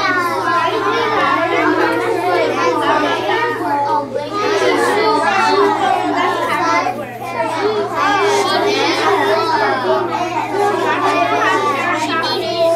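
Many children talking at once in pairs, a steady hubbub of overlapping young voices with no single voice standing out. A constant low hum runs underneath.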